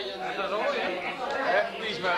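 Indistinct chatter: several people talking at once, no words clear.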